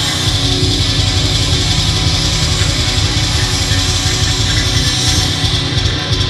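Hardcore metal band playing loud and live, with distorted electric guitars, bass and drums, in an instrumental passage without vocals.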